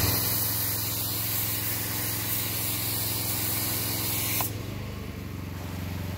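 A foam cannon on a pressure washer spraying soap foam in a steady hiss for about four and a half seconds, then cutting off abruptly. Underneath, a small engine keeps running steadily.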